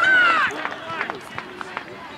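A loud, high-pitched shout lasting about half a second at the start, then quieter scattered calls and talk from spectators.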